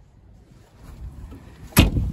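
Shuffling movement, then one loud thump near the end: the door of a 1985 Volkswagen Cabriolet being shut.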